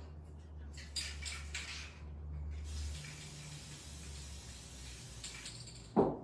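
Aerosol spray varnish can hissing off-mic, giving a second coat: a few short bursts, then a longer spray of about three seconds. A sharp thump right at the end is the loudest sound.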